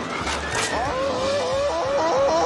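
Animated-film soundtrack: a score whose wavering melody line steps between notes from about a second in, preceded by a brief whoosh about half a second in.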